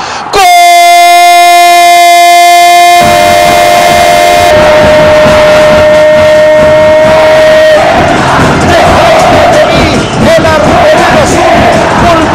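A football commentator's long, drawn-out goal cry held on one high note for about four seconds, then a second held note slightly lower that runs until about eight seconds in, as crowd noise rises. After that, crowd roar and excited voices.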